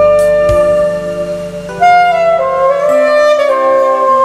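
Alto saxophone playing a slow ballad melody in long held notes over an instrumental backing track. The bass and drums drop out about three seconds in, leaving the saxophone over lighter accompaniment.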